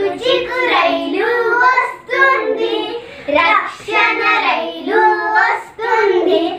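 Young girls singing a children's Christian song together without accompaniment, in sung phrases broken by brief pauses.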